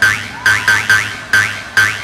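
Electronic club dance music: a run of about seven short, sharp pitched stabs in an uneven rhythm over a low bass.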